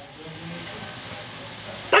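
Low, steady room noise in a pause between shouted toasts. At the very end a loud, drawn-out shouted "Tagay!" begins.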